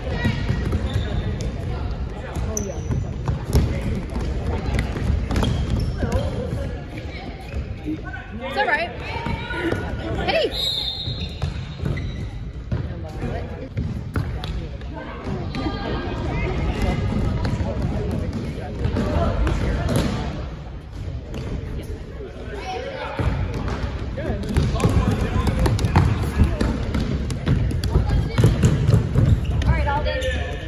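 Indoor soccer ball being kicked and bouncing on a hardwood gym floor, with players running and voices calling out in the large hall.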